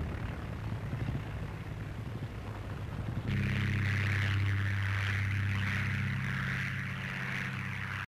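Piston aero engines of a twin-engined biplane running on the ground with a rough, uneven hum. About three seconds in this gives way abruptly to a louder, steady engine drone as the plane takes off.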